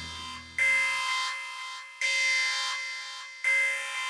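Synthesized alarm tone sounding three times, about every second and a half: each a sudden chord of steady high pitches that fades away, like a warning alert.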